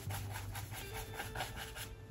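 Wide bristle paintbrush tapping against a stretched canvas in quick, even strokes, about six a second.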